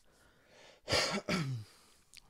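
A man clears his throat once, about a second in: a short rasp that ends in a brief falling voice sound.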